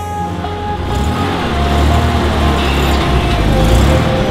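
A motor vehicle's engine running, with a low rumble that swells about a second in and stays loud, while background music carries on faintly underneath.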